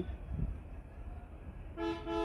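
Low background hum, then near the end a steady horn-like tone begins, held on one pitch with several overtones.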